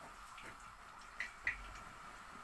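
Metal tongs clicking lightly against a steel pot: a few faint ticks, then two sharper clicks about a second and a half in, over quiet room tone.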